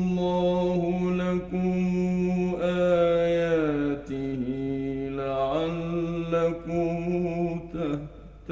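Male Quran reciter chanting in the melodic mujawwad style, holding long notes. The pitch falls slowly about three to four seconds in and rises again near six seconds, with a short break for breath just before the end.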